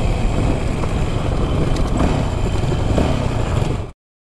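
Dirt bike ridden down a gravel road, heard from an on-board camera: steady engine and road noise with wind on the microphone. It cuts off abruptly near the end.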